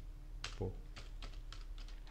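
Typing on a computer keyboard: a string of short, separate key clicks, several a second.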